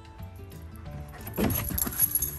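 Metal tags on an Alaskan Malamute's collar jingling as the dog moves, over soft background music; the jingling grows loud in a jumble of clinks and knocks in the last half second.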